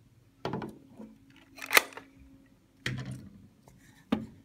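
Three sharp plastic clicks and knocks as a device base is handled and seated against the address programmer's adapter plate, the loudest and sharpest near the middle, over a faint steady hum.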